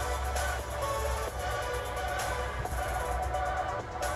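Background music with a steady low bass and held notes.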